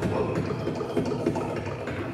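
Beatboxing into a microphone: a steady low bass line with short, sharp percussive hits every fraction of a second.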